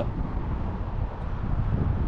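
Wind buffeting the action camera's microphone: an uneven low rumble.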